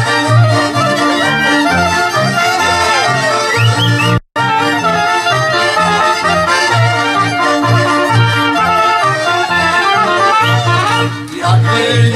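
Traditional Polish highland folk band playing an instrumental tune, the accordion leading over fiddles, trumpet and clarinet, with a double bass pulsing steadily underneath. The sound cuts out for an instant about four seconds in.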